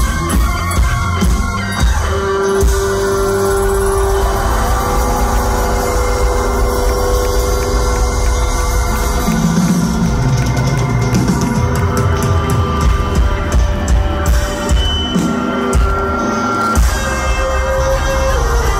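Rock band playing live through a club PA, heard from within the crowd: electric guitar with long held notes over bass and drums.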